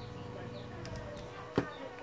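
Quiet, steady electrical hum with a single light click about one and a half seconds in, during hand soldering on a circuit board.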